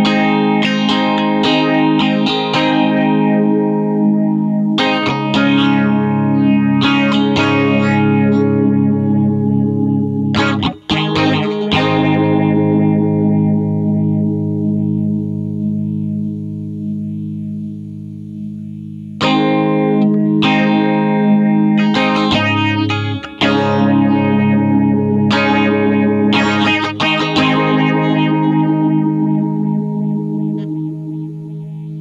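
Electric guitar playing chords and picked notes through the Diffractor Soundings Chromatic Journey stereo analog phaser, with a sweeping phase effect on the ringing chords. There is a brief break near 11 s, then a long chord fades out until a new phrase starts about 19 s in. While the Interactor footswitch is held in its Speed Ramping mode, the phaser's sweep progressively slows.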